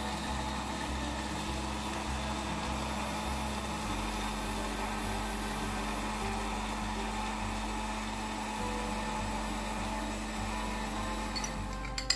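Electric countertop blender running steadily, blending milk, sugar and green cardamom into a smooth liquid.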